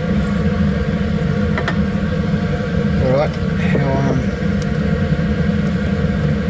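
Laminar flow cabinet blower running steadily, a constant low rush of air through the filter. A couple of light clicks occur, one about a third of the way in and one near the end.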